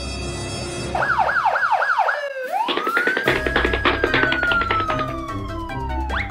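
Police siren sound effect over background music: about four quick up-and-down wails about a second in, then one long wail that rises and slowly falls away.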